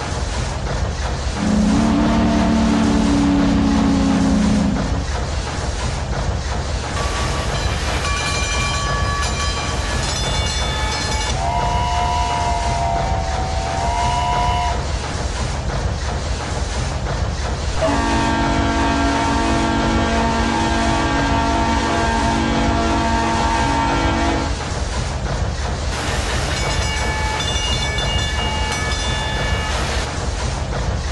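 Steam-train sound effects: steady rhythmic chugging with a series of whistle and horn blasts over it. There is a loud low horn chord near the start, then higher whistles, a wavering whistle, a long low horn chord in the middle, and high whistles again near the end.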